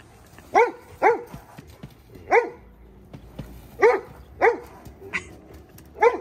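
A dog barking, about six short barks at uneven intervals.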